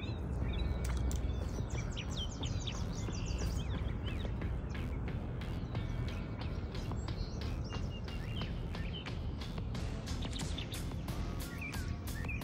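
Outdoor bankside ambience: small birds chirping over a steady low rumble, with scattered short ticks and rustles that come more often in the second half.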